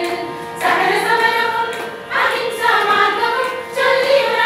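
A women's choir of music teachers singing a group song together; new sung phrases begin about half a second in, again about two seconds in, and just before the end.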